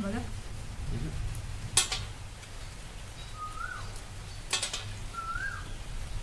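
Eating at the table with bare hands from brass plates: soft mealtime noises over a steady low hum, broken by two sharp clicks, one about two seconds in and one later on. Two short chirps that rise and then fall sound between the clicks.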